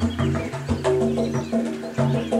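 Two-headed barrel drum played with the hands: a quick rhythm of strokes whose deep tones ring on between hits. Magpies chatter and call above the drumming.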